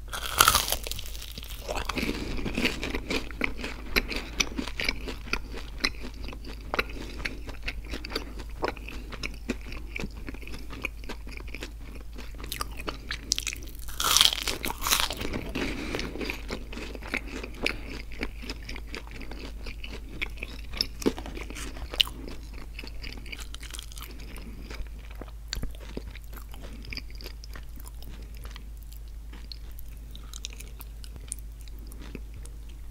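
Close-miked biting and chewing of McDonald's cinnamon-sugar donut sticks, crunchy and moist. A big bite comes just after the start and another around halfway, each followed by a run of chewing that grows quieter near the end.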